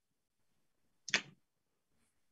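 A single short, sharp click about a second in, from a felt-tip marker being handled.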